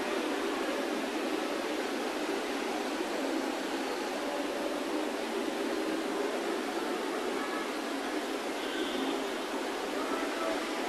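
A steady, even hiss of background noise with no distinct events in it.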